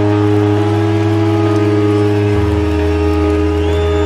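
Trance music in a breakdown: sustained synth chords over a held bass note, with no drum beat. The bass note steps down about two and a half seconds in.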